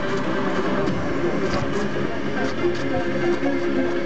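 Indistinct voices talking over steady background noise, with no clear words.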